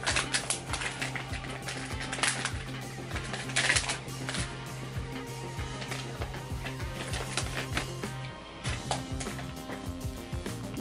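Crinkling and rustling of foil booster-pack wrappers and plastic packaging being handled, in quick irregular crackles, over soft background music with a steady low tone.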